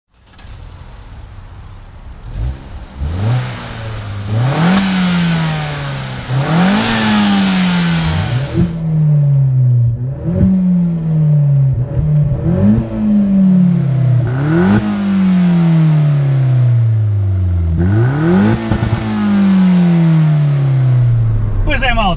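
Opel Corsa OPC's 1.6 turbo four-cylinder engine revved again and again, about every two seconds. Each time the revs jump up sharply and then fall back more slowly, through an exhaust with the catalytic converter removed.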